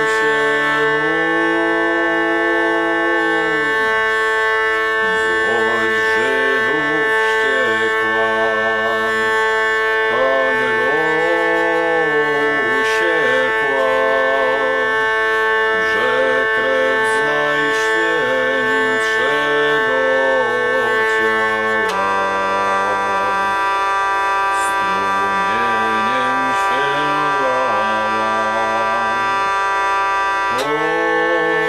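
Hurdy-gurdy playing a melody over its steady drone strings. About two-thirds of the way through, the drone shifts to a different set of tones.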